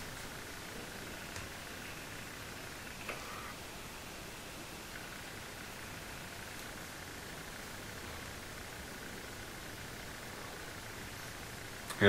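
Faint, steady hiss of an eGo-C e-cigarette with an iClear 30 dual-coil clearomizer being drawn on and exhaled, with a couple of small clicks.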